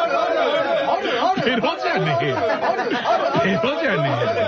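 Several voices chanting "aru aru" over and over at once, overlapping one another in a continuous chorus.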